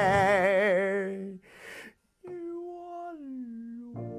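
Operatic singing: a held note with a wide, regular vibrato that ends just over a second in. After a brief pause, a softer hummed line slides down in pitch, and a piano comes in right at the end.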